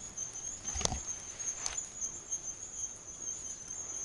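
Steady high-pitched trill of insects in the bush, with a couple of light clicks and rustles from hands picking a berry off the plant.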